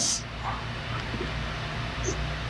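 Steady background noise with a faint low hum in a pause between speech, heard over a video call's audio.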